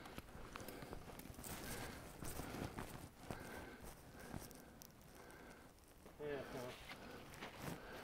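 Faint, irregular footsteps of a hiker walking on a rocky trail strewn with dry leaves, with a brief faint voice about six seconds in.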